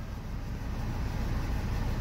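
Maruti Suzuki Ertiga's diesel engine idling steadily with the air conditioning running, heard from inside the cabin as a low, even drone.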